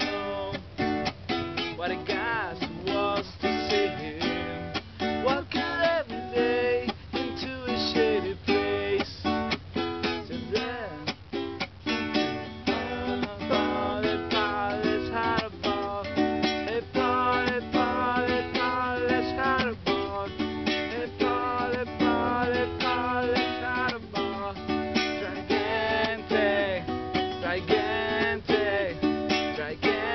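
Venezuelan cuatro strummed in a steady rhythm of quick, repeated chords.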